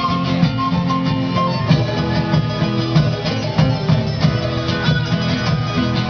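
A live band playing amplified music with a steady beat.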